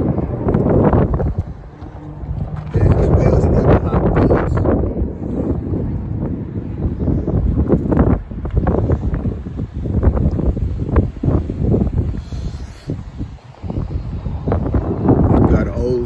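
Wind buffeting the microphone in gusts: a loud, low rumble that swells and drops unevenly.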